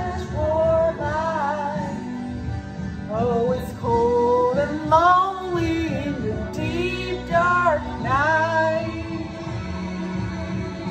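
Music: a song with sung vocals over an instrumental backing.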